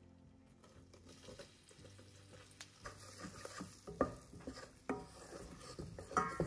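A wooden spoon stirring flour into melted butter and oil in a stainless steel pot, with the roux sizzling faintly on the heat. In the second half the spoon knocks against the pot several times.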